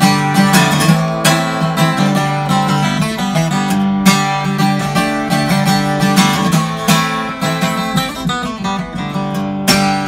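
Acoustic guitar strummed in a steady rhythm with no singing: an instrumental passage in a solo song.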